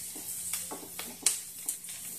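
Chopped garlic and green chillies sizzling in butter in a non-stick frying pan, with a few short scrapes and taps of a spatula as they are stirred.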